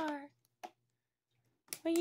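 A high-pitched, childlike speaking voice trails off just after the start, followed by one short, faint click and then near silence until the voice starts again near the end.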